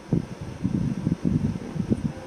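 Low, uneven rumbling noise with no clear pitch.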